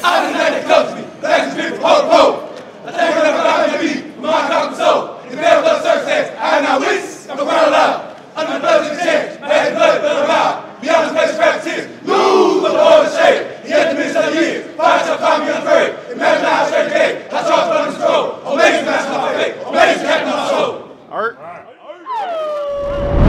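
A line of young men chanting and shouting together at full voice, in short rhythmic phrases about one or two a second. The chant falls away about a second before the end.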